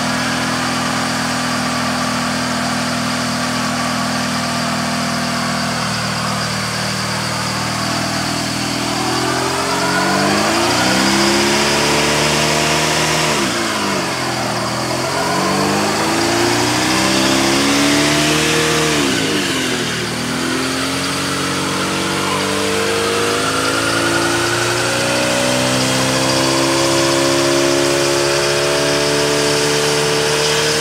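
A Jeep Cherokee XJ engine revving hard in a burnout, with a rear tyre spinning on the asphalt. It holds steady at first, then climbs, sags and surges twice, and is held at high revs near the end.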